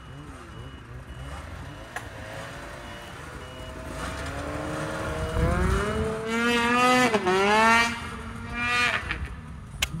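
Snowmobile engine held at full throttle, straining to push the sled up out of deep snow. It starts as a low rumble, climbs in pitch from about four seconds in, stays high with a short dip, then drops away near the end.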